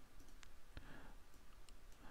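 A couple of faint computer mouse clicks about half a second apart, made while the rotation setting is nudged in the video editor.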